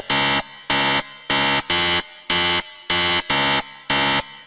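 Harsh electronic buzzer sounding in short repeated blasts, about two a second, some coming in quick pairs.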